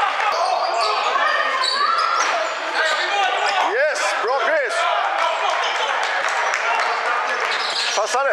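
Basketball game on a hardwood court: the ball bouncing on the floor and sneakers squeaking, with a few sharp squeals about four seconds in. Players' and spectators' voices echo through the large hall.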